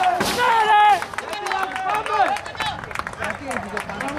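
Men shouting on a football pitch during play: a loud held shout in the first second, then scattered short calls and chatter, with a few faint sharp clicks.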